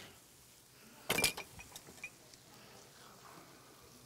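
A quick clatter of kitchen utensil clinks and knocks about a second in, followed by a few faint ticks, while an avocado is cut up and worked into a pan.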